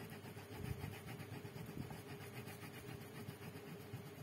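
Coloured pencil scratching on paper in quick, even back-and-forth shading strokes, with a steady low hum underneath.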